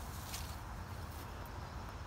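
Steady low outdoor rumble with two brief swishing footsteps through grass, about a third of a second in and just after a second.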